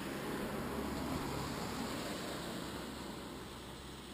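A vehicle passing on the street: a low engine hum and road noise that swells about a second in and fades away.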